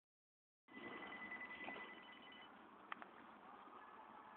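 Near silence: faint background hiss with a faint steady high tone for the first couple of seconds and two small clicks about three seconds in.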